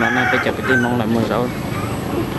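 Chickens clucking and a rooster crowing, mixed with people talking.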